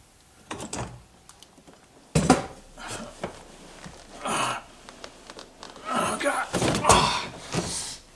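A man squeezing into a low fixed-back racing seat in a Mazda Miata: knocks and thumps of body and feet against the seat shell and door opening, clothing rustling, and grunts of effort. The sharpest knock comes about two seconds in.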